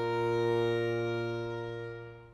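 Baroque violin and baroque cello holding a sustained chord, the cello on a low bass note under the violin. The chord swells, then fades away near the end.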